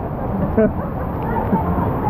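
Churning, rushing water of a strong river current close to the microphone, a steady low rush with brief voice sounds over it.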